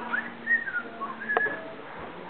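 A few short, high whistled notes that rise and fall, with a sharp click a little over a second in.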